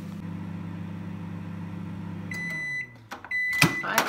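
Panasonic microwave oven running with a steady hum that stops about two and a half seconds in, as the end-of-cycle signal gives two short high beeps. Near the end the door is opened with a sharp clunk.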